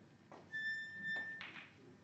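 A single steady high-pitched tone, held for about a second, with a light knock as it ends.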